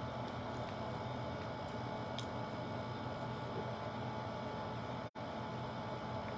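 Steady room hum and hiss with no speech, with a faint tick about two seconds in and a momentary dropout of all sound about five seconds in.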